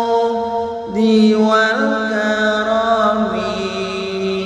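A voice chanting an Islamic sholawat (devotional song), drawing out long held notes that bend slowly in pitch; a new phrase comes in about a second in.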